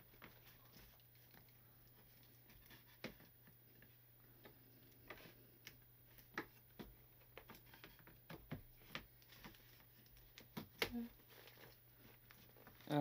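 Faint, scattered clicks and taps of the panels of a diamond-painting box kit being handled and pushed together, becoming more frequent in the second half, with a sharper knock near the end.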